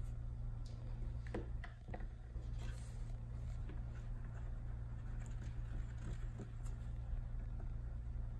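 Small handling sounds from a pH drop test: a few soft clicks about a second in as the reagent dropper bottle is handled, then faint light taps of a wooden stir stick against a small plastic cup, over a steady low hum.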